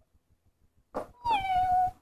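A short sound about a second in, then one drawn-out meow that dips slightly in pitch and holds.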